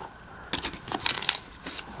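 Light handling noise from a plastic bicycle tool storage bottle being tipped over: a few faint, scattered clicks and rustles as the small screws and nuts inside shift.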